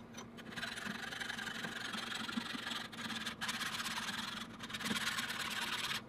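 Flat metal file rasping back and forth against the faces of soft cast-pewter vise jaws, truing them parallel. Several long strokes with short breaks between them.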